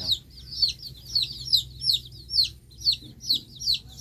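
Chicks peeping off-screen: a rapid, unbroken run of high, falling peeps, several a second.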